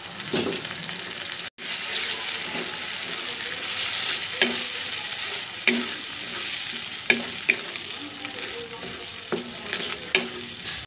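Spice paste frying with a little water in a non-stick kadai: a steady sizzle while a spatula stirs and scrapes it, with a few light taps of the spatula against the pan. This is the bhuna stage, where the masala is fried down. The sound cuts out for an instant about one and a half seconds in.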